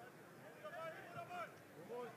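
Faint shouting voices from the pitch in a small football ground, heard over low crowd noise: protest at a foul, the outrage the commentator says is heard at once.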